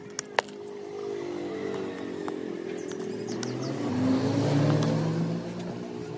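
A passing motor vehicle's engine, its sound swelling to loudest about four to five seconds in and then easing off, over steady background music. Two light clicks near the start.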